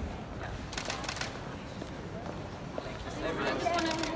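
Crowd voices and chatter in a busy hall, with a few sharp clicks about a second in; a voice speaks more clearly near the end.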